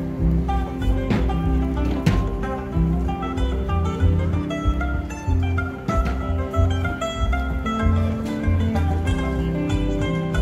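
Live acoustic jam band playing an instrumental passage: mandolin and electric guitar over a plucked upright double bass line.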